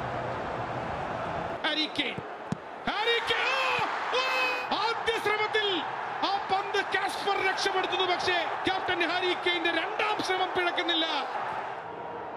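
Excited male football commentary in Malayalam, the voice rising and falling in long shouted calls.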